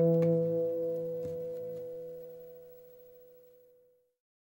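The last chord of the closing music rings out and dies away, fading out about three and a half seconds in.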